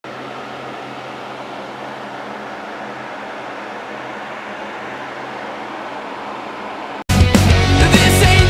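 A steady hiss for about seven seconds, then after a brief dropout loud rock music cuts in suddenly: the video's intro song.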